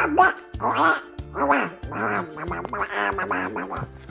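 A person doing a Donald Duck voice: garbled, quacking duck-voice talk in several short phrases, over light background music with a steady bass line.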